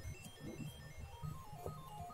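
Faint background music: a simple melody of short single notes stepping up and down over soft low pulses.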